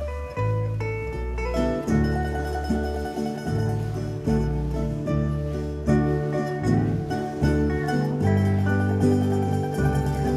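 Live country band playing an instrumental break: a picked string solo, a run of short plucked notes over steady bass and rhythm backing.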